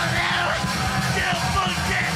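Hardcore punk band playing at full tilt: rapid drumming and distorted guitar and bass under a shouted vocal.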